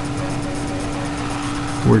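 A steady background hum with one constant tone, unchanging throughout; a man's voice begins right at the end.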